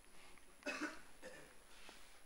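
A faint, short cough from a man about two-thirds of a second in, with a softer trailing sound just after; otherwise very quiet.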